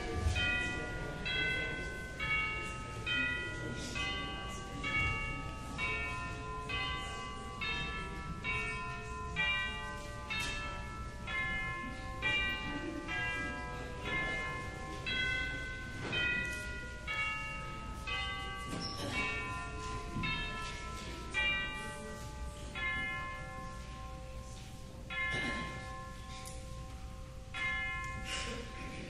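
Church bells ringing a slow melody, one struck note about every half second with each note ringing on under the next; the notes come more sparsely near the end.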